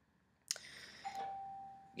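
A sharp click about half a second in, then a steady single-pitched electronic tone held for about a second.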